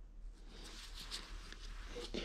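Faint handling noise: gloved hands turning a metal flat-face hydraulic coupler, with a few soft clicks.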